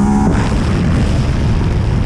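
Yamaha MT-09's inline three-cylinder engine running on the road, its note dropping out about a third of a second in under loud, rumbling wind rush on the microphone.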